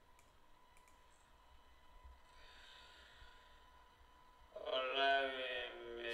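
A few faint computer mouse clicks, then, about four and a half seconds in, a man's voice played back by YouTube at 0.25 speed, its words stretched out into long drawn vowels.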